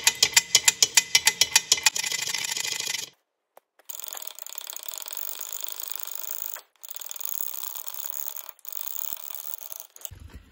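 Ratcheting end of a combination wrench clicking on a bolt, loud and even at about seven clicks a second for the first two seconds, then blurring into a faster run. After a short pause about three seconds in, quieter, rapid continuous ratcheting comes in three stretches, each broken off briefly.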